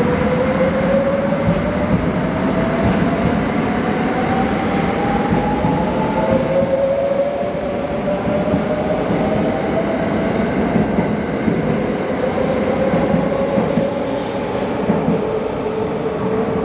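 JR West 681 series electric train accelerating away: its motor whine climbs in pitch over the first six seconds, then a second whine rises more slowly, over a steady rumble of wheels on rail. A few clicks come from the wheels crossing rail joints.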